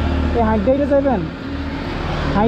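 A man's voice speaking a short phrase about half a second in, over the steady low running of an idling motorcycle engine.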